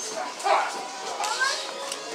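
Spectators' voices shouting and calling out over one another, with one loud shout about half a second in.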